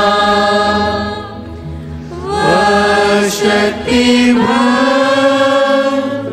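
A hymn sung by a choir in long held notes, with music under it; it dips quieter for about a second near the start, then swells again.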